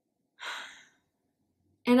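A woman's single short, breathy sigh about half a second in, followed by near silence until she starts speaking at the very end.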